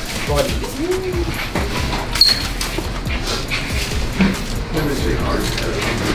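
Indistinct background chatter from several people, with music playing underneath and a few light clicks and knocks.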